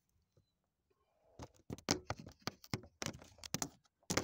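A smartphone being handled and set down, with a quick run of clicks, knocks and rubbing against its microphone starting about a second and a half in.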